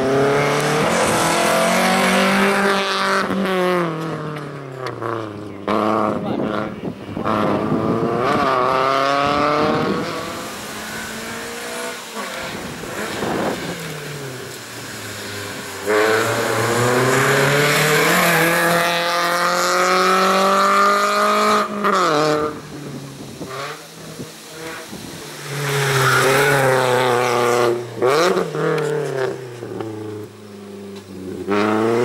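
Volkswagen Lupo slalom race car's engine revving hard, its pitch climbing and falling again and again as the car accelerates and brakes between the cones.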